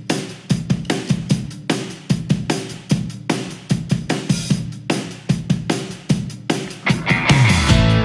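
Rock song intro: a drum kit plays a steady beat on its own. About seven seconds in, the rest of the band comes in with guitar and bass, and the sound gets louder and fuller.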